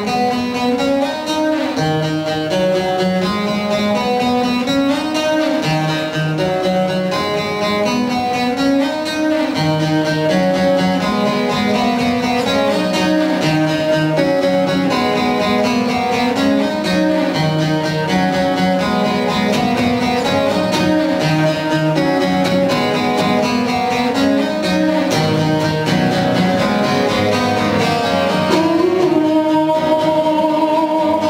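Acoustic guitar played live and layered with a loop station, so several guitar parts sound at once in a repeating pattern, with a bass line that steps up and down.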